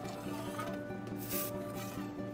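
Two short hisses of an aerosol insecticide spray, a longer one a little past a second in and a brief one just before the end, over steady background guitar music.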